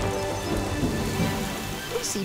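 Steady hiss of falling rain, a cartoon sound effect, with music underneath.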